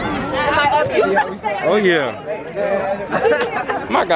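Several young men talking over one another and exclaiming excitedly, with one voice sliding down in pitch about two seconds in.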